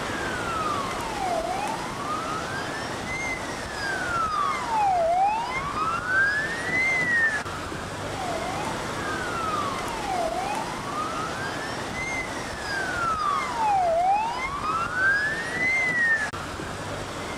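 A siren wailing, its pitch sliding slowly up and down about every three and a half seconds, with a brief break midway, over a steady rush of street and wind noise.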